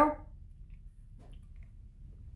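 A quiet room with a low hum and a few faint small clicks from sipping soda through a straw.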